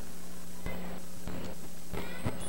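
Steady low hum and hiss with a few faint ticks, in a lull before the music starts.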